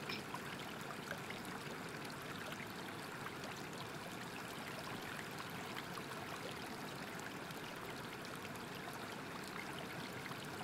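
Faint, steady rushing of flowing water, like a small stream or waterfall.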